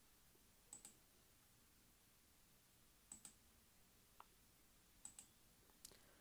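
Faint computer mouse clicks, each a quick double snap, heard about four times.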